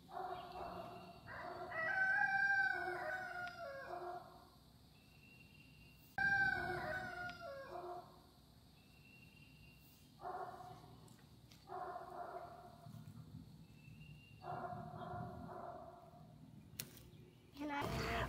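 A rooster crowing faintly several times, each call a drawn-out, pitched cry with a few seconds between them.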